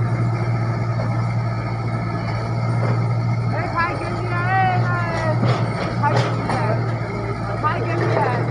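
Crawler excavator's diesel engine running at a steady low hum while it digs earth. A couple of sharp knocks come about six seconds in.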